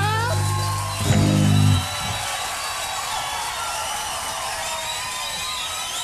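A live band with guitars and bass ends the song on a loud final chord that cuts off about two seconds in, followed by the audience cheering and applauding.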